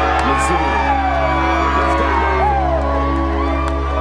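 A small group of people cheering, whooping and shouting in excitement, over background music.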